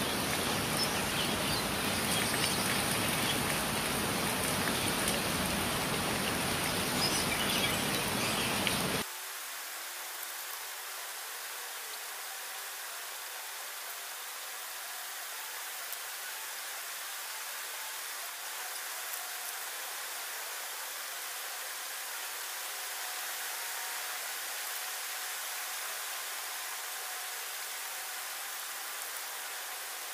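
Rain falling steadily, an even hiss. About nine seconds in it drops suddenly to a quieter, thinner hiss with the low rumble gone.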